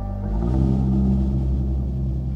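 Improvised instrumental band music in a low, held passage: deep sustained bass tones with a rumbling low end, a new note coming in about half a second in.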